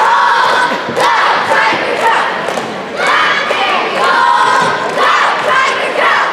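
Cheerleading squad shouting a cheer in unison, one loud chanted burst about every second, with a few sharp hits mixed in.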